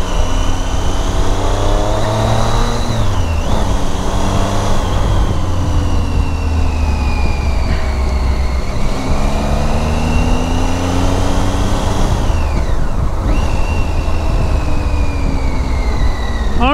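Motorcycle engine pulling under way, its pitch climbing and then dropping, with gear changes about three seconds in and again near the end, over a steady low rumble of wind and road noise.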